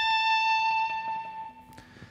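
Fender Stratocaster electric guitar holding a single high note, the 17th fret of the high E string just reached by a pull-off from the 20th. The note rings on steadily and fades out about a second and a half in.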